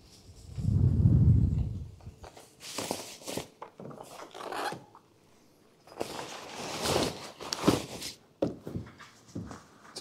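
Nylon tie-down strap rasping through its buckle in several short pulls, with tent fabric rubbing, as the lid of a hard-shell roof-top tent is pulled shut. A louder low rumble comes about a second in.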